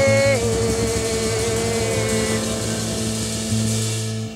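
Blues band holding a long sustained closing chord over a steady bass note, with a high note bending down slightly near the start.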